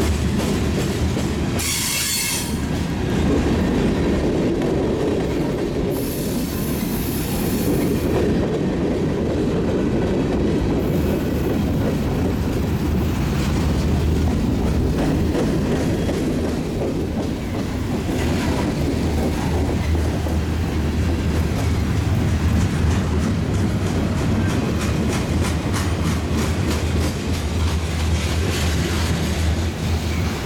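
Freight train of covered hopper cars rolling past at close range: a steady heavy rumble of wheels on rail, with clicks as the wheels cross rail joints. A short high wheel squeal comes about two seconds in, and a thinner, higher squeal follows from about six to eight seconds.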